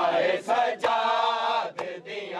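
Men chanting a noha in a Muharram majlis, with one long held chanted line, while the crowd beats their chests in matam: sharp hand strikes on chests about once a second.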